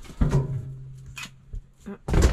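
Cardboard boxes being handled and rummaged through. There is a knock about a fifth of a second in, a low steady hum for over a second, and light rustling.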